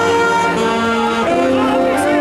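Mummers string band playing its theme live: saxophones and accordion hold full sustained chords, shifting chords twice.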